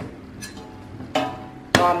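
Metal ladle knocking against a stainless steel pot of syrup: a short ringing clink about a second in and a sharper knock near the end.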